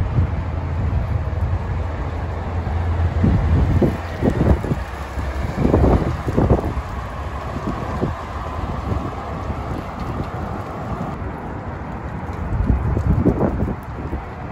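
Road traffic with an articulated city bus driving by, a faint steady whine in the middle. Gusts of wind buffet the microphone several times.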